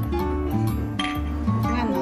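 Background music with a steady bass line, and a ceramic clink about a second in as a porcelain cup is set back down on its saucer.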